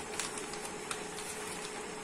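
A sheet of paper being folded and creased by hand: soft rustling with a few short crackles, over a faint steady hum.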